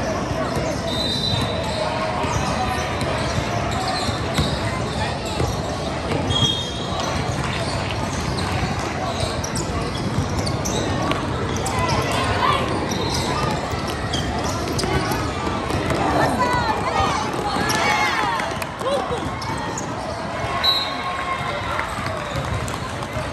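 Indoor youth basketball game: a ball dribbling on the court and spectators and players talking and calling out, with a few short high squeaks, about a second in, around six seconds in and near the end. The sound carries the echo of a large hall.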